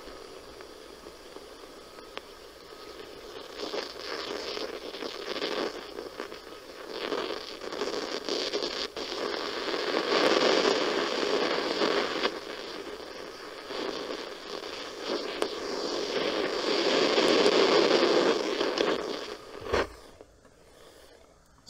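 Static-like rushing hiss from the AccuTrak VPE ultrasonic leak detector's audio output as its probe is worked over a leaking copper tube in an evaporator coil. The hiss swells and fades, loudest about halfway through and again near the end. The detector turns the ultrasound of escaping refrigerant into this hiss, and it grows louder at the leak.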